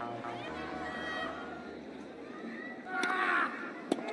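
Indistinct voices and crowd noise, with one sharp knock just before the end.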